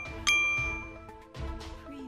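A bright bell-like chime from an outro jingle, struck once about a quarter second in and ringing away over the next second, over soft background music.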